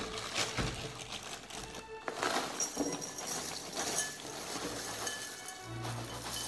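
A cereal box being opened by hand, with crackling and rustling of the cardboard top and inner plastic bag being torn open, over background music. Near the end, cereal starts pouring from the box into a ceramic bowl.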